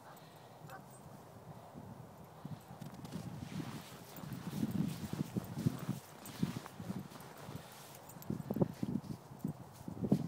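Weimaraner digging and pawing in snow: soft, irregular scuffs and thumps in clusters, starting a few seconds in and coming again near the end.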